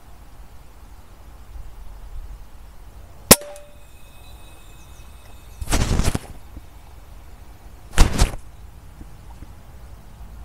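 Two PCP air rifle shots from an FX Maverick. The first is a sharp crack about three seconds in with a short metallic ringing after it; the second comes about eight seconds in. Between them, near six seconds, there is a brief rustling burst.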